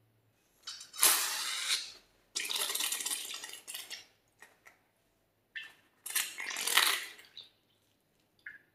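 Slime squeezed out of a cut balloon, squirting and spluttering into a glass dish in three noisy bursts, the first and loudest about a second in and the last near the end.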